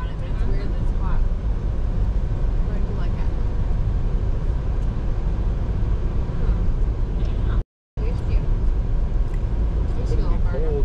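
Car cabin road noise while driving: a steady low rumble of tyres and engine heard from inside the car, with a brief dropout to silence about eight seconds in.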